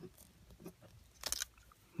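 Rubber dampers being pulled by hand through the holes of a small plastic anti-vibration camera mount: faint creaks and small clicks, then a quick cluster of snaps a little over a second in as a damper pops free.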